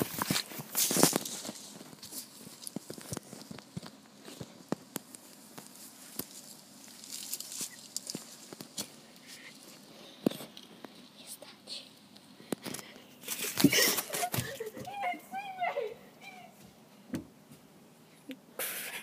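Rustling and handling noise with scattered light taps and clicks, louder at the start and again about fourteen seconds in. A short, high, wavering voice comes near the end.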